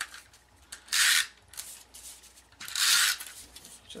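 SNAIL tape-runner adhesive drawn across cardstock twice, laying down strips of adhesive: two short strokes, about a second in and near the end, each about half a second long.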